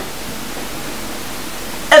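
Steady hiss of background noise in a pause between speech, even and unchanging; a man's voice starts just at the end.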